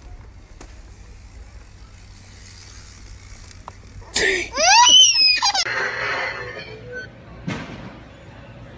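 A toddler's loud, high-pitched squeal, rising and then falling in pitch, lasting about a second and a half. A short noise follows near the end.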